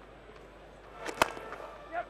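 A cricket bat striking the ball: a single sharp crack about a second in.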